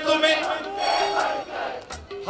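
A qawwali party's voices singing together, holding a long phrase over steady harmonium notes. The sound fades in the last half second before the next phrase.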